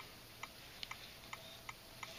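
Faint clicks of typing on a Nexus 7 tablet's touchscreen keyboard, about six key taps in two seconds, one per letter typed.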